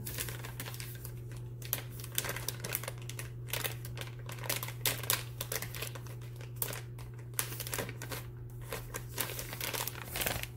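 Crinkly packaging being handled in the hands, giving a dense run of irregular crackles, over a steady low hum.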